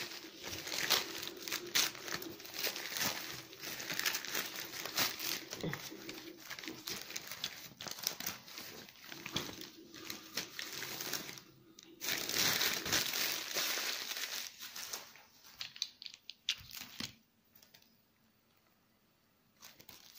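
Gift wrapping crinkling and rustling as a present is unwrapped by hand, with sharp crackles and some tearing. It breaks off briefly near the middle and stops about three seconds before the end.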